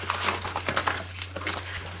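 Yellow padded mailer rustling and crinkling in irregular short crackles as it is handled and its contents pulled out.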